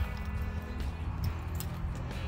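Quiet background music with a steady low bass.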